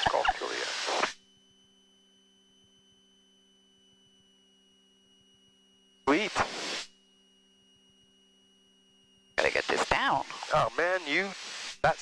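Headset intercom and radio audio. Short bursts of voice transmissions, the first carrying static, are cut off between times to near silence with only a faint steady electrical hum.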